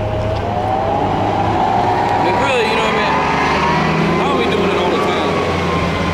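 A motor vehicle's engine speeding up, its tone rising over the first two seconds and then holding steady, over a low steady rumble.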